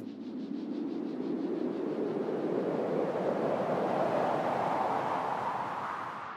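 A rushing swell of noise, like an edited transition effect, growing slowly louder and higher for several seconds, then fading out.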